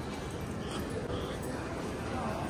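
Steady background ambience of an open-air shopping street, with a few faint, short, high-pitched squeaks in it.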